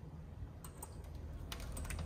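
Metal latch and hardware of an aluminium-framed glass door clicking a few times as the door is worked open, a couple of light clicks followed by a quick cluster of clicks near the end, over a steady low hum.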